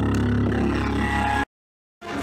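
Loud amplified concert sound in an arena: a steady low bass rumble with a few held tones above it, cut off to dead silence about one and a half seconds in.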